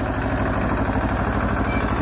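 Swaraj farm tractor's diesel engine running steadily with an even, low beat while it pulls a potato planter.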